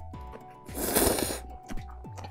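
A short, hissy slurp of japchae glass noodles being sucked into the mouth about a second in, over background music.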